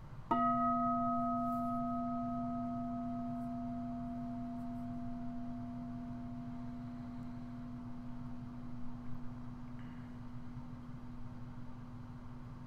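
A metal singing bowl used as a bell of mindfulness is struck once with a padded striker. It rings with a low tone and several higher overtones. The higher overtones die away within a few seconds while the low tone keeps ringing.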